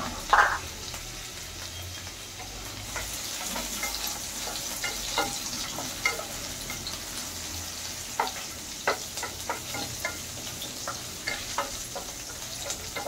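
Oil sizzling in a non-stick frying pan as nut pieces fry, with a wooden spatula tapping and scraping against the pan as they are stirred. The sizzle grows louder about three seconds in, and the spatula ticks come irregularly.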